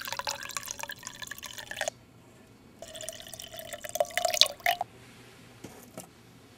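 Sound of liquid being poured into a cup, triggered when the teapot-shaped box is tipped over the cup-shaped box. It comes in two bursts of about two seconds each that start and stop abruptly, and the second rises slightly in pitch, like a cup filling.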